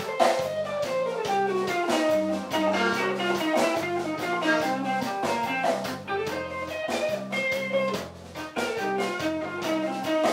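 Live blues band playing an instrumental passage: electric guitar leading over drums, with a bowed violin joining in. A line of notes falls in pitch over the first two seconds or so.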